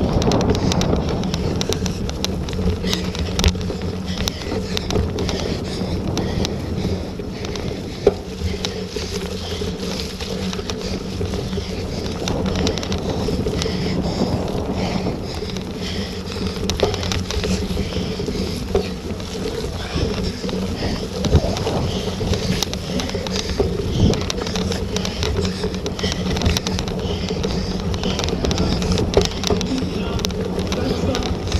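Bicycle ridden over bumpy grass and heard through the bike-mounted camera: a steady rumble with wind on the microphone and frequent knocks and rattles from the bumps, over a steady low hum.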